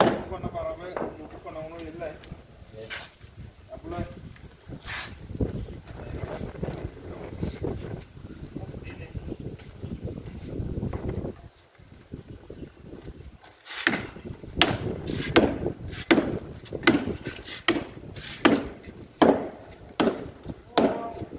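Hammer and chisel knocking into a plastered masonry wall, chiselling out the cracks so they can be filled with cement. The knocks are sharp and irregular at first, then come loud and fast, about two a second, for the last several seconds.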